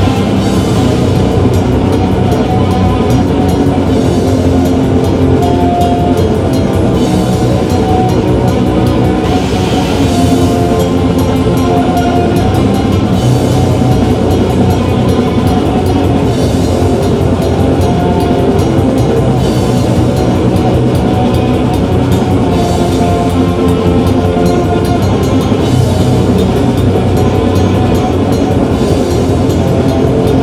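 A sludge/doom metal band playing live at full volume: heavily distorted electric guitars and bass holding sustained, slow riffs over a drum kit, with cymbal crashes about every three seconds.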